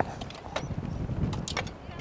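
Hand tools digging into stony soil: irregular sharp knocks and scrapes, several in quick succession after about a second and a half, over a low rumble that fades near the end.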